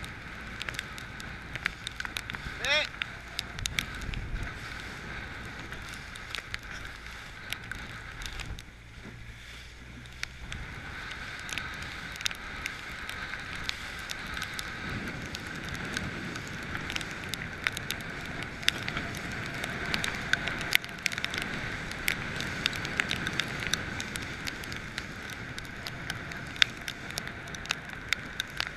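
Outboard motor of a coach boat running steadily, with water splashing and slapping against the hull and wind gusts buffeting the microphone.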